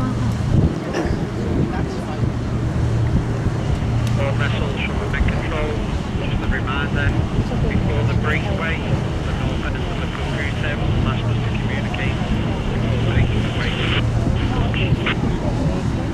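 Tug and boat engines on the river running with a low drone that swells and fades, under wind buffeting the microphone.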